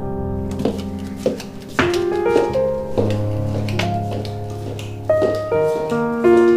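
Background music: a slow piano melody of single struck notes ringing over held low bass notes.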